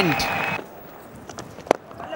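Low stadium ambience, then a single sharp crack of a cricket bat striking the ball near the end.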